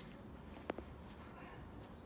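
Quiet background with a single short click about a third of the way in.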